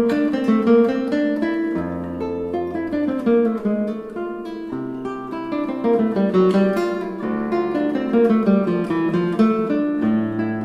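Handmade classical guitar with a European spruce top and maple back and sides, played fingerstyle on its nylon strings: a continuous flow of plucked melody notes over held bass notes that change every second or two.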